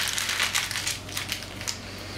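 Paper receipt being crumpled in the hand, an irregular crinkling and crackling that thins out near the end.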